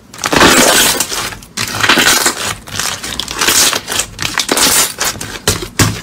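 Purple slime pressed and squeezed by hand, crackling and popping densely as the air pockets in it burst. One long burst comes first, then shorter irregular bursts about every half second.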